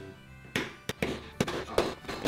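About five sharp knocks on a wooden table, starting about half a second in, as Oreo cookies in a zip-top bag are pounded to crumbs.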